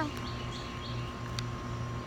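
Outdoor ambience while waiting to shoot: a steady low hum with a faint steady tone under it, and a few faint bird chirps in the first second.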